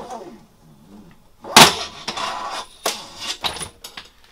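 Handling noise from a Wilwood parking-brake cable and its metal end fittings: three sharp knocks, the loudest about a second and a half in, with rustling and scraping between them.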